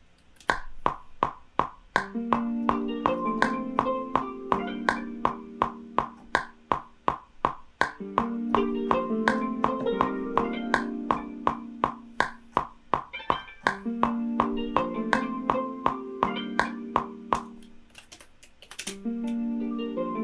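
Plucked guitar notes from the Spitfire LABS software guitar, run through a chorus pedalboard, playing a slow melody over a steady metronome click at 164 BPM, a little under three clicks a second. The notes and clicks drop away briefly near the end, then a loud click and the guitar start again.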